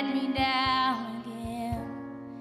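A slow country ballad performed live by a band: a long held note with vibrato fades out about a second in, over soft sustained accompaniment with regular low beats.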